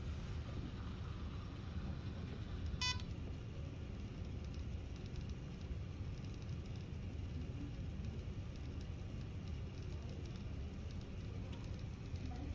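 Steady low room rumble, with one short electronic beep about three seconds in.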